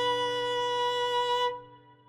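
Final strummed chord of an acoustic guitar ringing out at the end of the song, then cut off sharply about one and a half seconds in, leaving a short fading tail.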